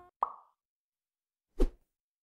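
Two short sound effects for an animated TV end card. A bright pitched pop comes about a quarter second in, then a louder, deeper hit about a second and a half in.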